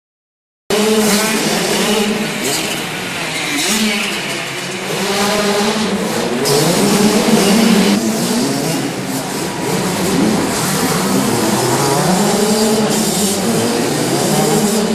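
Several small motocross bike engines, two-strokes among them, revving up and easing off as the bikes ride round a dirt track inside a hall, their overlapping notes rising and falling in pitch. The sound cuts in suddenly after a moment of silence.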